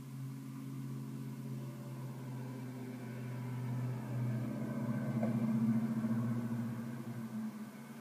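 A steady low mechanical hum, like a motor or engine running, swelling louder around the middle and easing off near the end.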